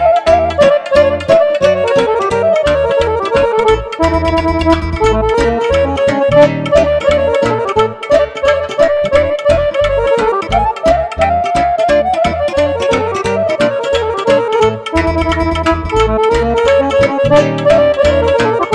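Romanian lăutărească band music played live: clarinet and accordion carry the melody over rapid struck cimbalom notes and a keyboard bass line. The texture is dense and runs without a break.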